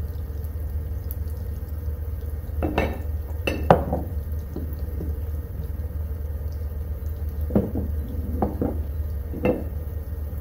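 Green onions sizzling in hot oil in a wok-shaped nonstick pan, with a few sharp knocks and scrapes of a spatula against the pan. The loudest knock comes about three and a half seconds in.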